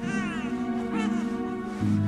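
Newborn baby giving two short cries, the first falling in pitch over about half a second, the second about a second in, over background music with held tones.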